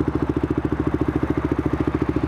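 Motorcycle engine idling, a steady and even rapid pulsing of exhaust beats.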